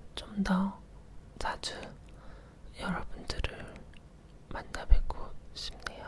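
A woman whispering close to the microphone, with a few sharp clicks between the phrases, the loudest about five seconds in.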